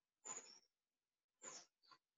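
Near silence: room tone with three faint, short noises about a second apart.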